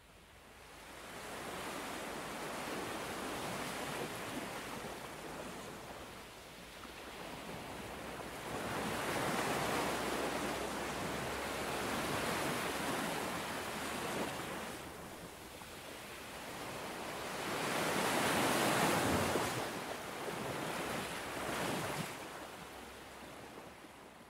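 Sea waves washing onto a beach, with the rush of surf swelling and falling back in several surges. It fades in over the first couple of seconds and out near the end.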